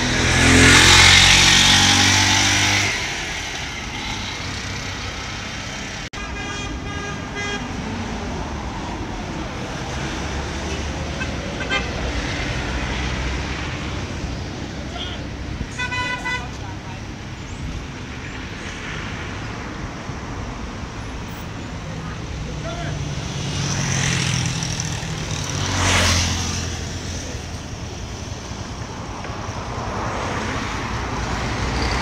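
Roadside traffic: a vehicle passes close by at the start, loudest of all, and another passes near the end. Car horns toot twice in between, once for over a second and once briefly, over a steady hum of traffic.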